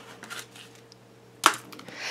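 Cardstock and chipboard handled with a faint rustle, then one sharp slap about one and a half seconds in as the chipboard album cover is laid down flat on the table.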